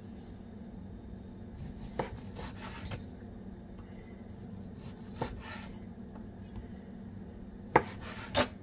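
A wide-bladed kitchen knife slices through partly frozen chicken breast and taps a plastic cutting board: a few soft, irregular knocks, then one sharper knock near the end.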